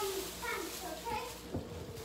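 A few faint snatches of a child's voice talking, well below the nearby speaker's level.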